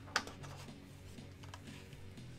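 A glossy comic-book page turned by hand: one sharp paper snap just after the start, then a few faint ticks, over quiet background music.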